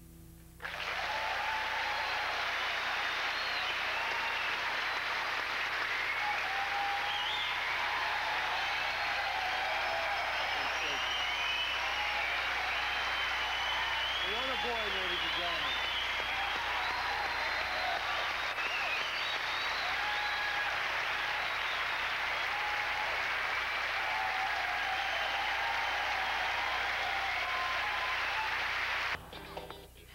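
Studio audience applauding steadily, with cheering voices mixed in. It cuts off suddenly about a second before the end.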